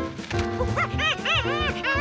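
Excited cartoon cheering cries: a quick run of short, rising-and-falling hoots over background cartoon music, as a worm race gets under way.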